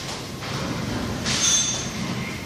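A brief high-pitched squeal, holding two steady pitches for a little over half a second in the second half, over a steady background din.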